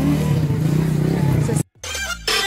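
A steady low engine hum with outdoor noise, cut off suddenly near the end. A short gap of silence follows, then a swooshing transition sound effect begins.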